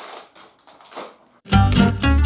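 Plastic sweet packet crinkling and crackling as it is pulled open; about one and a half seconds in, loud background music with a strong bass cuts in suddenly.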